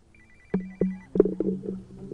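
A phone ringtone: a high beep pulsing rapidly for about a second, then stopping. A couple of sharp knocks follow.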